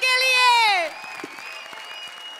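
A high-pitched voice holds a long note that slides down in pitch and stops about a second in, followed by quieter studio-audience applause.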